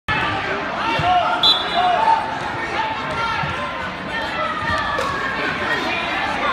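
Crowd chatter and shouting from many spectators and coaches in a large gymnasium, echoing. It is broken by a few dull thuds and a short high whistle-like tone about a second and a half in.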